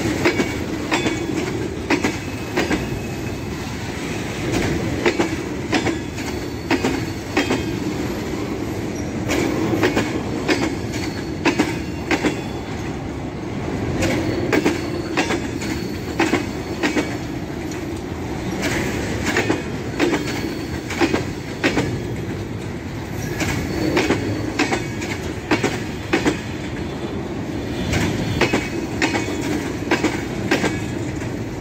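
Covered freight box wagons rolling past close by: a steady rumble of wheels on rail, with wheelsets clicking over the rail joints in repeated clusters.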